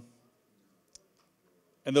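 Near silence in a pause of a man's speech, with one faint short click about a second in; his voice trails off at the start and resumes near the end.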